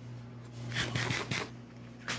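Steady low electrical hum of kitchen equipment, with a short cluster of rustling, scraping noises about a second in.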